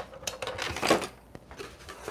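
Stiff cardstock being handled and a scoring board being moved aside on a desk: a few paper rustles and light knocks, mostly in the first second, then quieter handling.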